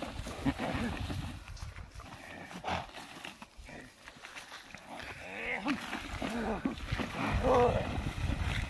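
A herder's drawn-out calls of "oh" to a herd of buffaloes, two short calls in the second half over faint rustle and scattered low sounds.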